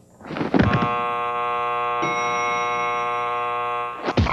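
Game-show buzzer held down, giving one long, steady, flat buzzing tone of about three and a half seconds.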